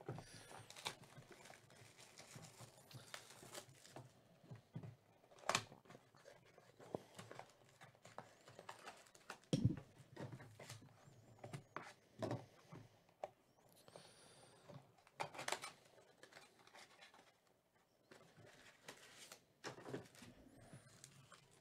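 Faint handling of a cardboard trading-card box and its wrapped card packs: light rustling and scattered small clicks, with a dull thump a little before halfway.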